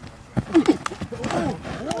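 Quick footfalls and sharp slaps of two football players engaging hand to hand, mixed with men's short shouts and grunts of effort, starting about half a second in.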